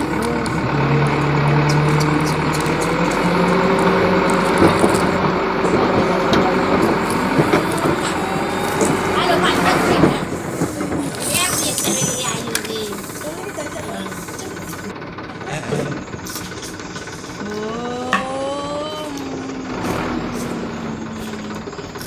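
Wordless voice sounds: a long steady hum through the first half, then shorter hums that slide up and down in pitch near the end, with scattered light clicks of plastic toys being handled.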